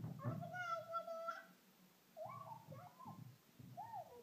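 A small child's high-pitched vocalizing: one held squeal lasting about a second near the start, then after a short pause several brief rising-and-falling squeals.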